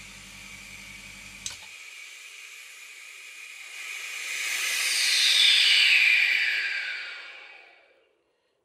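Vacuum pump running with a steady pulsing hum, switched off with a click about one and a half seconds in. Then air hisses back into the resin-casting vacuum chamber as the vacuum is released, swelling to its loudest past the middle with a falling pitch and fading out near the end.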